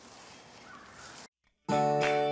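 Faint outdoor background noise, cut off by a brief moment of dead silence, then instrumental outro music starts abruptly near the end with sustained, steady notes.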